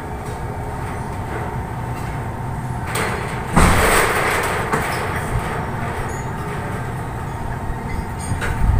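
Loud, sudden slurping rush of air at the mouth while eating a spoonful of chili-hot food, starting about three and a half seconds in and fading over about a second, over a steady background hum.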